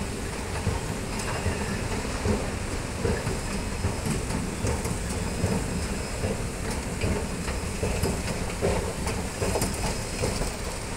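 A 2014 OTIS escalator running, with a steady rumble and irregular light clicks and rattles from the moving steps, heard while riding down on it.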